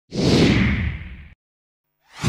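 A whoosh sound effect from an animated logo intro, with a deep rumble underneath. It swells in quickly, sinks a little in pitch as it fades, and cuts off abruptly just over a second in.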